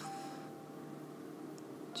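Faint ambient background music: a few soft, steadily held tones.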